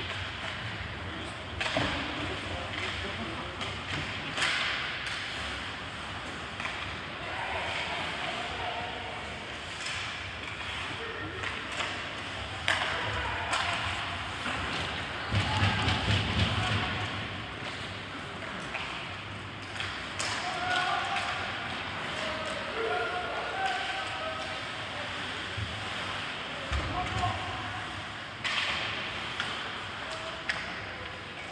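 Ice hockey play echoing in an arena: sharp knocks of sticks on the puck and the puck thudding off the boards every few seconds. Players and spectators call out over a steady rink background, with the busiest stretch about halfway through.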